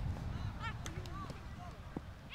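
Young footballers' high-pitched shouts and calls across the pitch during play, short and scattered, over a low steady rumble, with a couple of sharp knocks.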